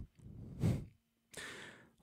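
A man breathing into a close microphone between sentences: a soft sigh out, then a short breath in just before he speaks again.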